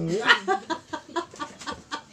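A person laughing in short, rhythmic bursts, about four a second, loudest at the start.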